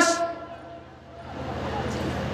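The end of a man's loud, drawn-out preaching voice through a microphone and public-address system, echoing away during the first half second. It is followed by a low steady hum from the sound system.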